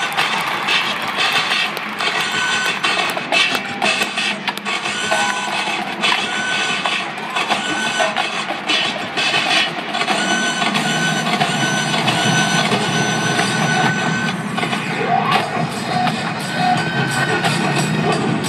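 College marching band playing live: percussion-driven music with sharp strokes and a short high note repeating about once a second. A fuller, lower layer swells in about ten seconds in.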